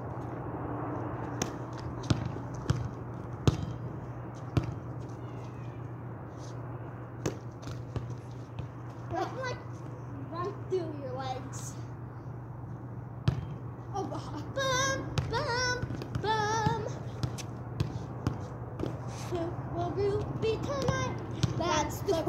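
A volleyball being passed back and forth: sharp slaps of the ball on hands and forearms, several within the first five seconds and a few more spaced out after. Girls' voices call out in the second half, over a steady low hum.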